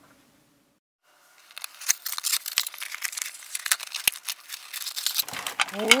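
A cardboard toy box being torn open by hand, with a dense run of tearing and crinkling starting about a second and a half in.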